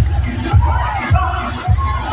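Dance music played loud with a heavy kick drum beat about twice a second, over the chatter and shouts of a dancing crowd.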